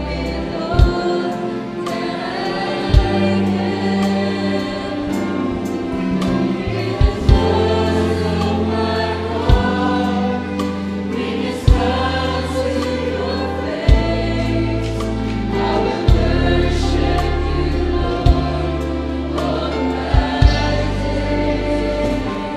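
Mixed choir of young men and women singing a slow gospel worship song in unison, accompanied by an electronic keyboard with long held bass notes. A sharp beat lands about every two seconds.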